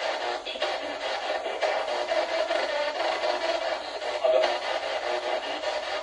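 Ghost box (radio-sweep spirit box) scanning through stations: a continuous, choppy stream of static mixed with clipped scraps of broadcast audio, thin and without bass.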